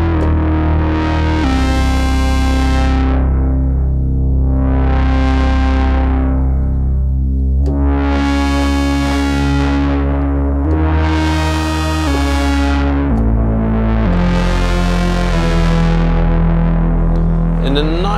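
Sine wave shaped by a Klavis Flexshaper waveshaper, its mid-up section audio-modulated by a second oscillator, giving a rich, buzzy synthesizer tone. The tone steps between low notes every second or so to every few seconds, and its upper harmonics swell and fade five times.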